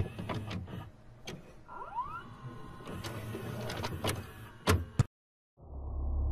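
Videotape-player sound effect: a noisy motor whir with a rising whine about two seconds in and several sharp clicks and clunks, like a cassette being loaded and set to play. Shortly before the end the sound cuts to dead silence for half a second, then a low hum starts.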